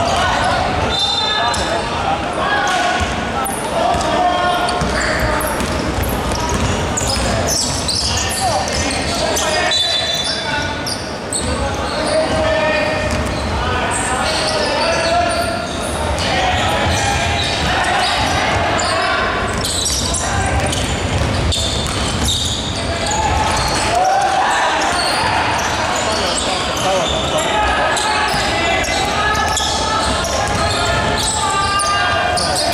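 A basketball bouncing on a hardwood court during play, mixed with players' shouts and chatter, in a large sports hall.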